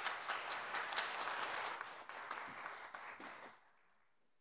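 Congregation applauding, the clapping dying away about three and a half seconds in.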